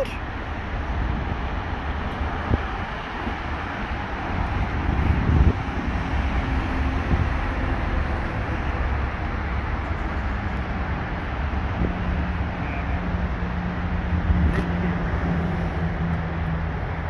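Steady outdoor traffic noise, a low rumble with hiss over it, and a faint steady engine hum that comes in about twelve seconds in.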